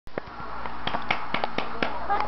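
A baby clapping his hands: about eight soft, sharp claps at uneven spacing, the unsteady rhythm of a baby who has only just learned to clap.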